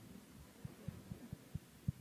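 Faint, muffled low thuds, about six at uneven spacing: bumps and footfalls on the stage floor as the clergy shift about and sit down.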